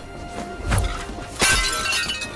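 Action-film fight soundtrack: background music with two hit effects, the second, about one and a half seconds in, the loudest and followed by shattering glass.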